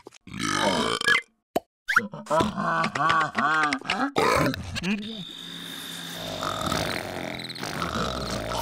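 Cartoon character gibberish vocalizations: grunting and burp-like calls, then a quick run of bouncing sing-song giggles. After about five seconds they give way to a quieter steady background with a thin high tone.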